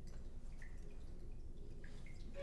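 Quiet room tone with a steady low hum and two faint short ticks, about half a second in and near the end.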